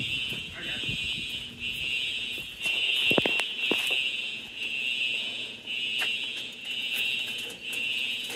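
Simplex TrueAlert fire alarm horns sounding during a system test, a shrill horn tone going on and off in repeated pulses.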